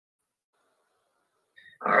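Near silence, then a man starts speaking near the end with "All right".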